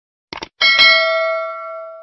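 Subscribe-animation sound effect: a quick double mouse click, then a bright bell ding that rings on and fades away over about a second and a half.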